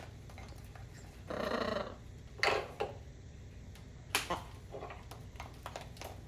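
Macaws eating frozen peas from a stoneware cup: sharp beak knocks and clicks on the cup and perch, with a short rough call from one of the birds a little over a second in.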